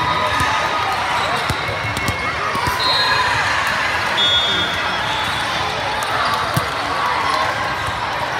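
Busy indoor volleyball hall: many voices chattering, with volleyballs being hit and bouncing on the courts. A couple of short high whistle tones, and a sharp ball strike about six and a half seconds in.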